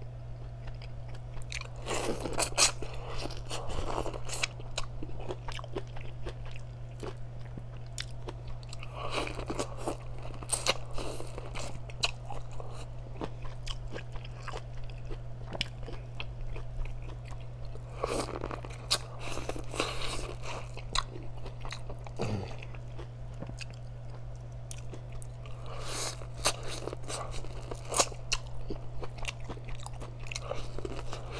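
Close-miked biting and chewing of boiled corn on the cob: four spells of crunching about eight seconds apart, over a steady low hum.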